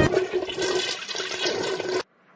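A toilet flushing: a rush of water that rises and falls unevenly and cuts off suddenly at the end.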